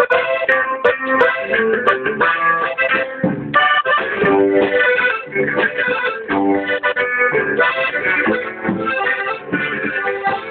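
Instrumental music: sustained chords under a melody of held notes that change several times a second, with a short break about three and a half seconds in.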